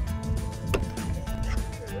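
A golf club striking a ball off a turf hitting mat: one sharp crack about three quarters of a second in, over background music.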